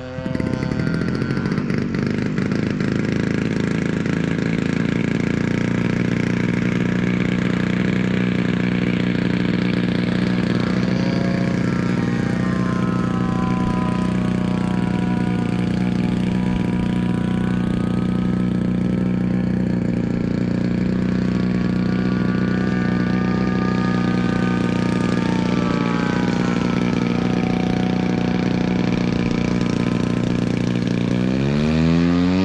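A piston engine running steadily at one speed close by, starting abruptly. Over it a fainter engine note slowly rises and falls in pitch as a propeller aircraft flies overhead.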